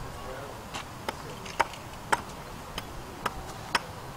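Hatchet striking wood in short, sharp blows, about two a second, as a length of wood is trimmed at a chopping block.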